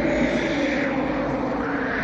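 A whooshing transition sound effect: a steady rush of noise, like a jet passing, with a faint tone that rises slowly.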